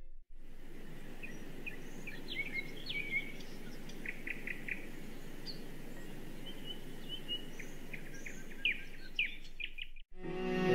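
Birds chirping: scattered short calls and quick runs of notes, some sliding down in pitch, over a steady low rushing background.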